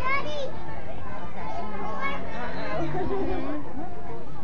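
Overlapping voices of spectators, children among them, talking and calling out at a youth baseball game.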